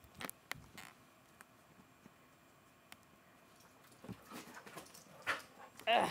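Brittany fetching a thrown toy on carpet: a few soft taps and knocks, a quiet stretch, then more scuffling and a short dog sound near the end.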